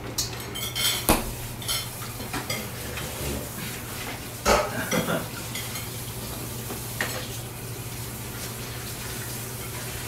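Cooking utensils clinking and scraping against a metal pot and frying pan, with a handful of sharp knocks, the loudest about four and a half seconds in, over a steady low hum.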